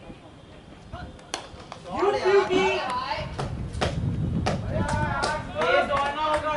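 Voices calling out loudly on a cricket field from about two seconds in, with a few sharp knocks among them. The first knock comes about a second and a half in.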